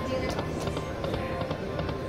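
Casino slot-floor ambience: electronic slot machine music and jingles with a few short clicks, over a murmur of background voices.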